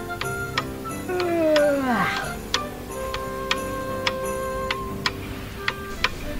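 Clock ticking about twice a second over soft background music, with a falling, sliding tone from about one to two seconds in.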